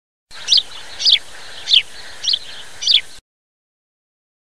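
A bird chirping five times at an even pace, about one short downward-sliding call every half-second, over a steady background hiss. The sound starts and cuts off abruptly.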